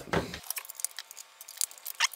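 Light scattered clicks and taps from hands handling a small plastic electronics housing and picking up a screwdriver.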